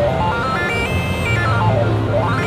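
Korg RK-100S keytar synthesizer running a fast arpeggio from its ribbon controller: quick, evenly stepped notes climb for about a second and then step back down, over a held low note.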